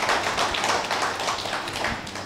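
A small group of people clapping, a steady run of handclaps that eases off a little near the end.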